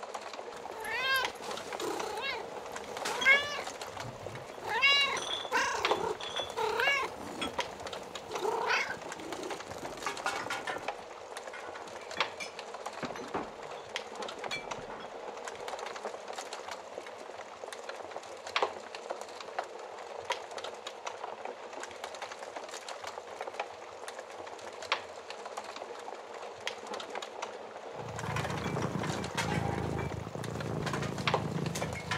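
A cat meowing repeatedly, about seven rising-and-falling meows over the first ten seconds, over the soft crackle and pops of a wood fire. Near the end a low steady rumble comes in.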